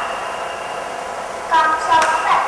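Steady hiss from a video soundtrack played back over a hall's loudspeakers, with a voice coming in about one and a half seconds in.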